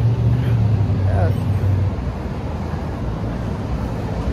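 City street traffic noise, with a vehicle engine's low hum that fades out about halfway through.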